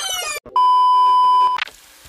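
VHS-style rewind transition sound effect: a rising, sped-up sweep cuts off, then a steady high beep sounds for about a second, followed by a few faint clicks.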